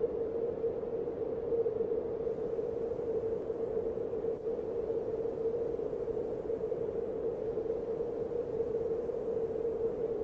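A steady, hissy musical drone holding one pitch: the quiet ambient introduction of the song.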